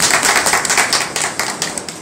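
A small group of people clapping by hand, a quick patter of overlapping claps that fades out near the end.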